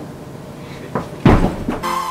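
A person's body dropping onto a hardwood floor: a light knock about a second in, then a heavier, deeper thump.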